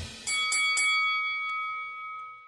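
A bell chime struck three times in quick succession, then ringing out and slowly fading. It works as a station stinger leading into a radio commercial break.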